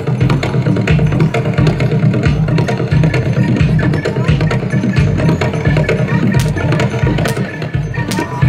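Traditional East Javanese Bantengan accompaniment music, a percussion ensemble with drums keeping a steady low beat and sharp wooden-sounding strikes, played loud.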